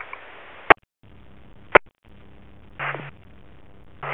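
Two-way radio received on a scanner: open-channel hiss between race control transmissions, broken twice by a sharp squelch click and a brief cutout. Near the end comes a short burst of noise with a low hum as the next transmission keys up.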